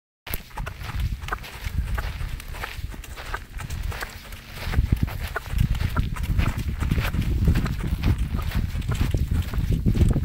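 A pony's hooves thudding on a sandy arena at a quick trot, over a steady low rumble that grows heavier from about halfway through.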